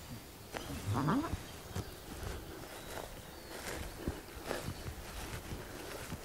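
A short rising animal call about a second in, over faint scattered crackles of footsteps in woodland leaf litter.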